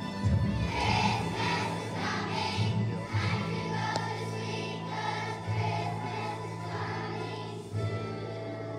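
Large group of young children singing a song together over musical accompaniment.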